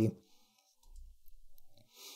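A pause in a man's speech, holding faint clicks, a soft low thump about a second in, and an intake of breath near the end.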